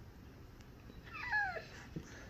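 A dog giving one short, high whine that falls in pitch, about a second in.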